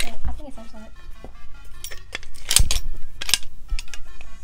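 Small metal camping shovel being handled and pulled from its fabric pouch: metal clinks and a few sharp clicks, the loudest about two and a half seconds in and another shortly after.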